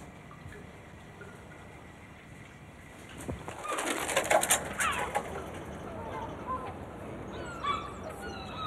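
Faint room tone, then about halfway through a busy chorus of birds: many short chirps and quick sliding calls, densest just after they begin.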